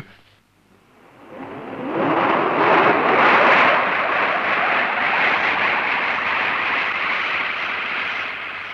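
A loud rushing roar that swells up about a second in, holds steady, and begins to fade near the end, in the manner of a jet or rocket sound effect in a 1960s film soundtrack.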